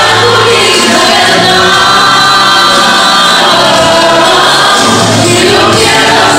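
A mixed choir of students singing a song together, with held notes.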